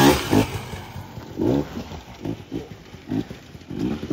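Enduro dirt bike engine, loud as the bike passes close at the start, then revving up and down over and over as the throttle is worked through the mud.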